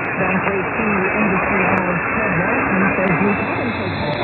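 Medium-wave AM broadcast on 1290 kHz received at long distance: a talk voice comes through heavy static hiss, muffled and narrow, with no treble. A faint steady high whistle comes in near the end.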